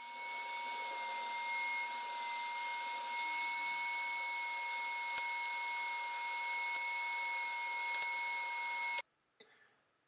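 Handheld trim router with a 5 mm round-over bit running at a steady high whine while it rounds over the edges of a merbau hardwood block. The sound stops abruptly about nine seconds in.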